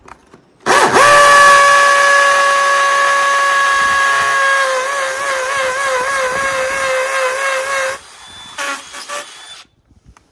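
DeWalt cordless drill on its hammer setting, drilling a 7 mm masonry bit into a brick wall's mortar joint: a loud, steady whine starts just under a second in, wavers in pitch from about halfway, and cuts off about eight seconds in.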